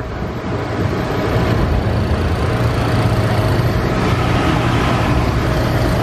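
Steady low outdoor rumble of wind on the microphone mixed with industrial-plant machinery hum, with a faint steady tone running through it. It grows slightly louder and then cuts off suddenly just at the end.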